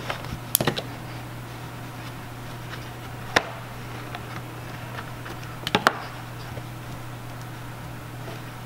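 Handling noise from hands working knitted sock loops on a cardboard-box loom: a few sharp light clicks and taps, about half a second in, about three and a half seconds in, and a close pair near six seconds, over a steady low hum.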